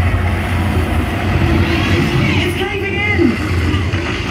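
Theme-park dark ride: a loud, steady low rumble, with indistinct voices over it.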